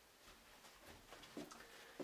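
Near silence: room tone with a few faint soft clicks in the second half.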